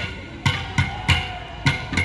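Live folk music: drum strokes with a bright ringing percussion beat, about three strikes a second, over a faint melody line.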